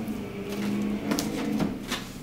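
Plastic-wrapped notebooks being handled and stacked, with a few sharp clicks and rustles in the second half, over a steady low hum that stops shortly before the end.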